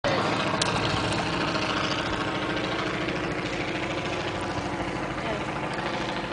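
A motor or engine running steadily, a drone with a fast regular throb that fades slightly toward the end.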